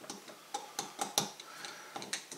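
Screwdriver driving a screw into a stepper motor's metal end cap, giving several short, sharp metallic ticks at irregular intervals.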